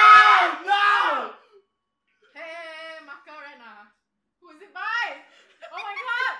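A man and a woman shriek in excitement for about a second and a half, then quieter voice sounds and exclamations follow.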